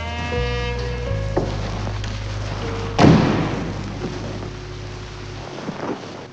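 Film score: a low sustained bass drone, with a high sustained note over it in the first second, and a loud crash about three seconds in that rings and fades over a couple of seconds. The bass drone stops shortly before the end.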